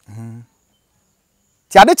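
A man's voice: a short low hum in the first half-second, then a silent pause, and he starts speaking again near the end.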